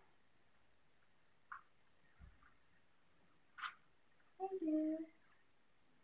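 Mostly quiet room with a few faint clicks and a soft low knock as rocks and shells are set into a hermit crab cage, and a brief voice about four and a half seconds in.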